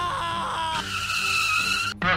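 Cartoon sound effect: a high screech that wavers in pitch, then settles into a steady squeal about halfway through and cuts off just before the end.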